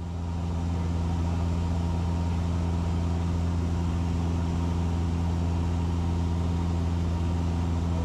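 Cessna 172's engine and propeller running steadily in flight, heard from inside the cockpit as an even drone. It swells up over the first second, then holds steady.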